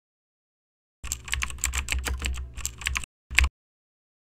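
Typing on a computer keyboard: a quick run of keystrokes lasting about two seconds, starting about a second in, then one last separate keystroke.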